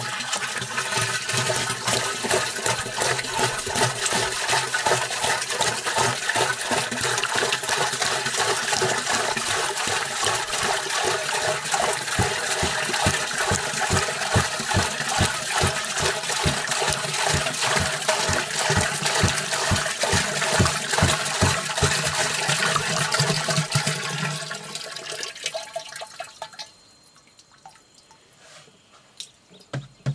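Water pouring from a plastic jerrycan into a plastic drum: a steady splashing stream with a regular glugging of about two or three gulps a second. The flow thins to a trickle and stops a few seconds before the end.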